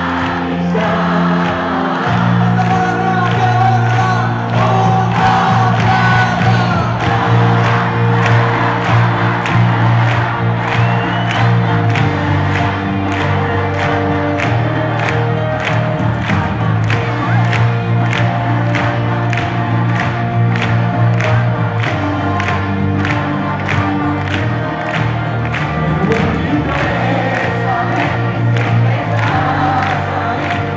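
Live pop band playing on a loud concert PA with a steady drum beat about twice a second, with a large crowd singing along and cheering, heard from the stands of an open-air arena.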